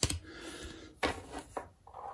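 A stack of cardboard trading cards being flipped through by hand: two sharp card snaps about a second apart, with a soft sliding scrape of card over card between them.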